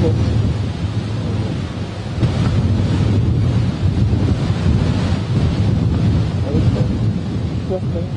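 Wind buffeting the microphone outdoors: a loud, steady low rumble.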